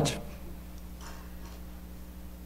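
A pause in speech: room tone with a steady low electrical hum from the microphone and sound system, and a few faint, scattered ticks.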